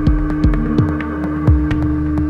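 Electronic music: a steady humming drone with four deep bass thuds that drop quickly in pitch, over scattered clicks.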